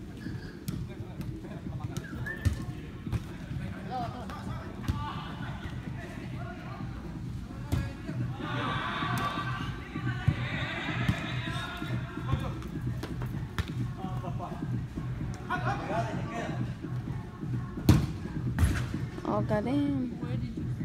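Indoor soccer match in a large hall: players' shouts and calls echo at a distance, with sharp thuds of the ball being kicked now and then, the loudest a couple of seconds before the end, over a steady low rumble.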